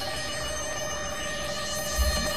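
Background music: a sustained electronic chord, several steady tones held without a break.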